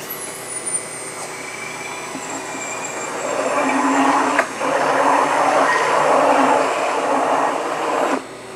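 Electric immersion (stick) blender running in a glass bowl of raw eggs, whisking the whole eggs together. It grows louder partway through, breaks off briefly about four and a half seconds in, then runs at its loudest until it stops at the end.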